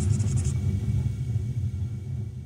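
Deep rumbling sound effect for a logo intro: it starts all at once with a short hiss on top for the first half second, then holds as a low rumble that begins to fade near the end.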